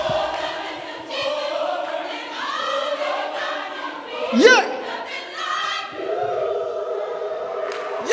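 Gospel choir singing held chords with no instruments, after the band's bass and drums drop out just after the start. About four seconds in, a single voice swoops sharply upward.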